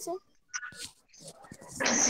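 A student's voice coming over a video call in broken fragments, with stretches of dead silence where the call audio cuts out. A brief faint sound comes about half a second in, and speech picks up again near the end.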